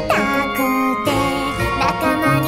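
Orchestral arrangement of an anime idol song playing, with held chords and quick sliding pitch lines.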